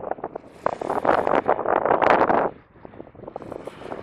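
Wind buffeting the microphone in gusts, with a loud stretch from about half a second to two and a half seconds in, then a drop before it picks up again near the end.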